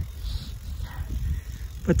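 Wind buffeting the microphone: an uneven low rumble with a faint hiss over it.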